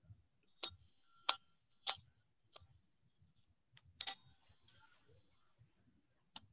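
Faint, sharp clicks from fingers tapping a phone or device, about six of them at irregular intervals.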